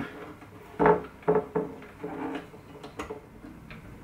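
Handling sounds of a nylon string being wound onto a classical guitar's tuning roller: a few short clicks and knocks in the first half, a couple with a brief ring, then quieter fiddling.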